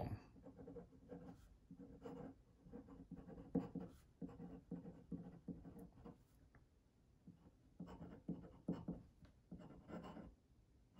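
Faint scratching of a glass dip pen nib across paper, writing in short, irregular strokes with a brief pause a little past the middle.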